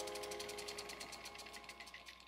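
Rapid, even mechanical clicking, about fourteen clicks a second, over a few held musical tones, both fading out.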